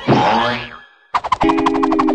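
A cartoon sound effect with a wobbling pitch that fades out within the first second. After a brief near-silent gap, music starts with a fast ticking beat over held low notes.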